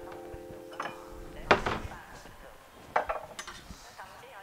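A small ceramic bowl set down on a wooden cutting board with one sharp knock about one and a half seconds in. Near the end a chef's knife clicks and scrapes on the board as chopped chilies are scooped onto the blade.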